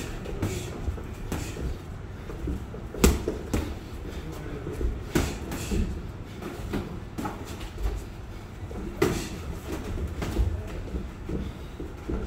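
Boxing gloves landing punches during sparring: irregular sharp thuds, the loudest about three seconds in, over a steady low rumble.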